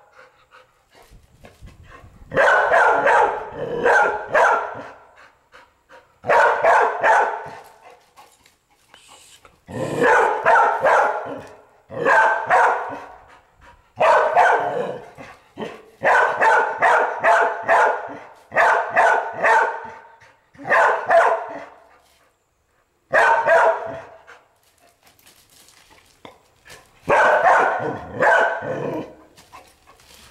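Young red-nose pit bull barking at an iguana in repeated volleys of several quick barks, about ten volleys with short pauses between them: territorial barking at an intruder.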